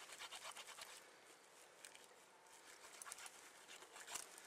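Faint scraping and crackling of a blunt knife hacking through a goat's neck, with a flurry of small clicks in the first second and more near the end.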